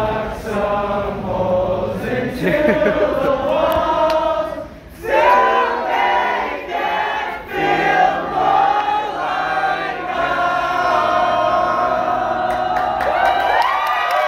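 Many voices singing together like a choir, with long held notes. They break off briefly about five seconds in and come back loud, and rising whoops come near the end.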